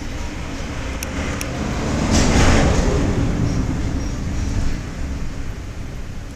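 A low rumble that swells to its loudest about two and a half seconds in and then fades, like a vehicle passing by, with two sharp clicks about a second in.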